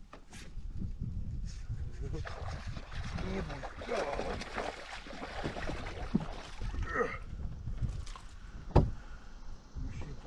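A hooked bass splashing and thrashing at the water's surface as it is reeled in beside a boat, then one sharp thump near the end as the fish is swung onto the carpeted deck.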